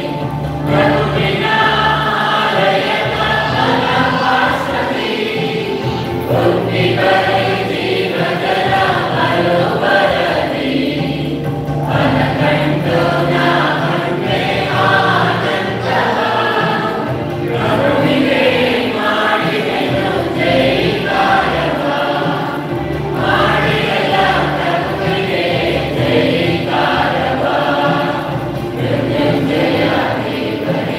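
A church choir singing a hymn with musical accompaniment.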